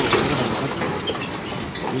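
Diesel farm tractor engine running as it tows a water tanker trailer past.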